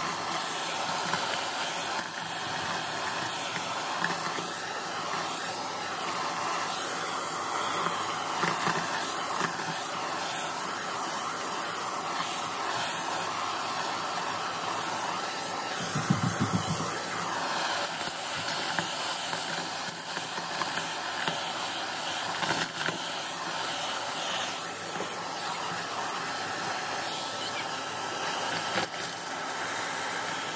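Shark DuoClean vacuum running with its crevice tool, sucking up a pile of sequins, confetti and small craft bits from carpet, with small pieces clicking as they go up the tube. A brief low bump about halfway through.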